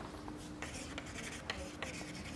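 Chalk writing on a chalkboard: a quick run of short taps and scratchy strokes as letters are drawn.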